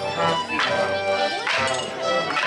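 Live folk dance tune played for Morris dancers, with sharp wooden clacks of Morris sticks struck together twice, about a second apart.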